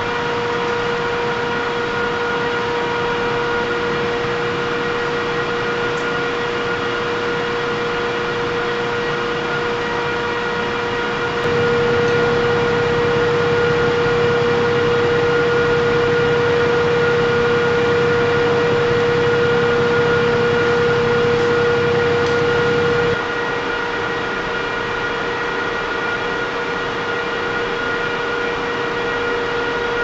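Steady machine hum with several fixed tones over a noise bed, growing louder and deeper from about a third of the way in until about three quarters of the way in, then settling back.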